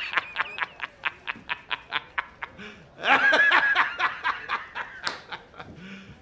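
A man laughing loudly and heartily in a rapid run of short bursts, about five a second. A bigger, higher burst of laughter comes about three seconds in, then it tails off.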